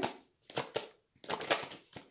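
Tarot cards being handled as one is drawn off the deck: a few short, crisp card snaps and slides in two quick clusters.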